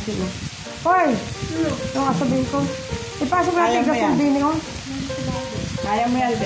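Pork belly sizzling on a tabletop grill, under loud overlapping voices and exclamations from people at the table, with music in the background.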